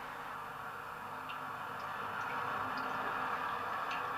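Steady hiss of an old film soundtrack with a few faint ticks, and no clear sound event.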